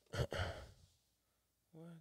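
A man's short, loud breathy exhale, like a sigh, close to the microphone, lasting under a second. Near the end he starts to speak.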